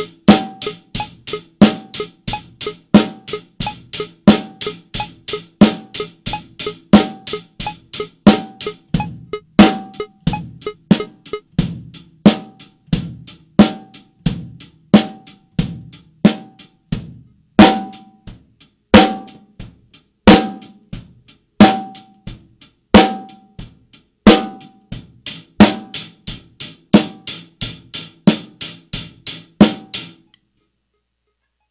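Acoustic drum kit played in a steady groove to a metronome beeping on the beat, as a dynamics exercise that brings out the bass drum, snare and tom in turn. After about 17 s the hits become sparser and heavier.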